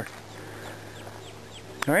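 Quiet outdoor background with a string of faint, short, high, falling bird chirps.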